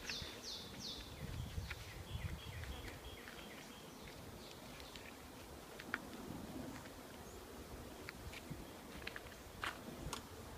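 A songbird singing: a run of quick, high down-slurred notes at the start, then a shorter string of chirps. A few sharp clicks come later, from wooden hive frames being shifted with a hive tool.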